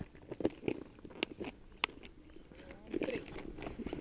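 Handling noise from a clear plastic tackle box and its lure and snap-clip packets: soft rustling and light clicks, with two sharp clicks in the middle.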